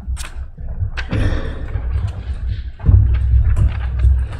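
Knocks and a loud low rumble of handling noise at a lectern microphone as it is touched and moved. A few sharp knocks come in the first second, then a steady low rumble from about a second in.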